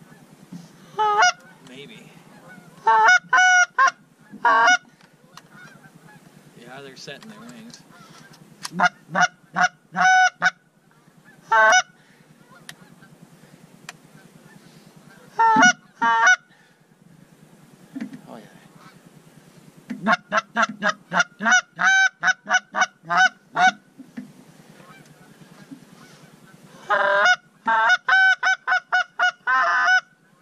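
Hand-held goose call blown to imitate Canada geese: single honks and short pairs of honks, then quick runs of clucks at about three a second, twice in the second half.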